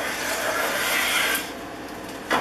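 A Stanley No. 130 double-end block plane is pushed along the edge of a wooden board, its iron cutting a shaving. It is one steady stroke that ends about one and a half seconds in.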